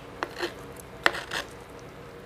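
A spatula clinking and scraping against a baking pan as a slice of meatloaf is pried up: a few light clicks, the sharpest about a second in.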